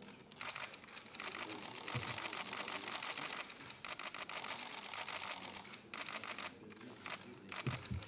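Several camera shutters clicking rapidly, overlapping into a dense, faint clatter with a few brief lulls.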